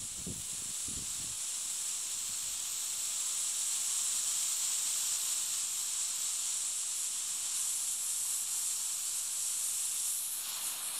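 A steady high hiss throughout, with a few soft footfalls in grass in the first second and a half.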